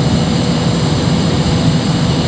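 Jet aircraft engine running steadily: a loud, even rush of noise with a thin, high, steady whine above it.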